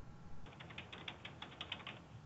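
A rapid run of small mechanical clicks, about ten a second, starting about half a second in.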